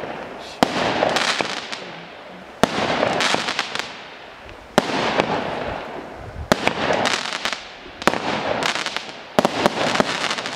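A 16-shot, 0.8-inch consumer firework cake firing shot after shot, about one every one and a half to two seconds. Each shot is a sharp bang followed by a second or so of crackling that dies away.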